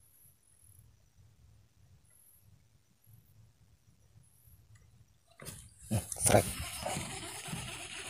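Near silence with faint high chirps for about five seconds, then sudden loud knocking and rustling as the fishing rod and reel are grabbed when a fish takes the bait.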